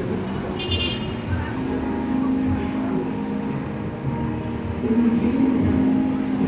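Steady engine hum and low rumble of road traffic, growing louder about five seconds in. A brief high-pitched chirp sounds under a second in.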